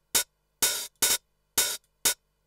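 Roland TR-909 hi-hat sample played alone from the Battery 4 drum plugin: four hits about half a second apart, alternating short and longer. The envelope release is cut short, so the note lengths shape the groove.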